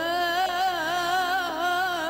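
A singing voice holds one long note in a Middle Eastern style, wavering with an even vibrato throughout.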